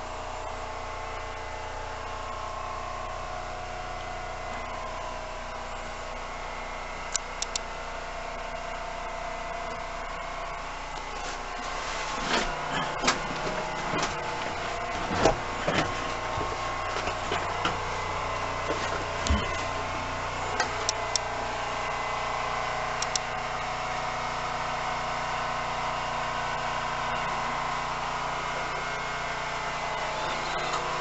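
Steady running noise inside an old passenger train carriage, with a series of irregular clacks and knocks through the middle as it rolls along.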